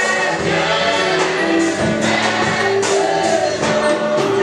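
A church congregation singing a gospel hymn together with musical accompaniment, several voices at once, steady and loud throughout.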